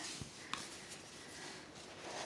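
Faint handling rustle with one small click about half a second in.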